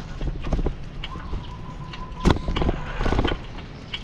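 Bicycle rattling and knocking as it rolls over the road, with wind rumbling on the microphone; a sharp knock about two seconds in is the loudest, and a thin steady tone runs for about a second just before it.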